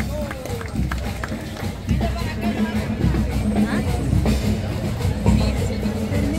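Band music with a heavy, pulsing drum beat, mixed with voices talking in the crowd.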